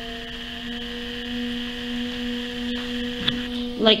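Electric potter's wheel motor humming steadily while the wheel spins, a steady tone with several overtones. A short spoken word comes near the end.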